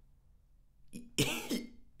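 A man's short, sharp burst of laughter starting about a second in, after a near-silent pause.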